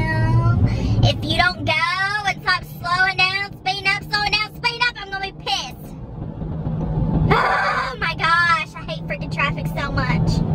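A voice vocalising with a wavering, sing-song pitch and no clear words, over the steady hum of a moving car's cabin; the voice breaks off for a second or so past the middle, then resumes.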